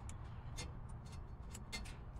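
Faint scattered light ticks and clicks over a low steady rumble.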